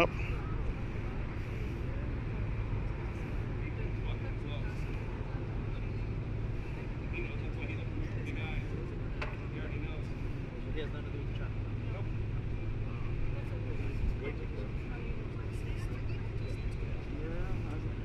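Idling car engines giving a steady low hum, under faint, indistinct voices.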